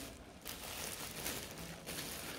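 Thin clear plastic bag rustling and crinkling faintly as hands work a foam ball into it and gather the plastic around it.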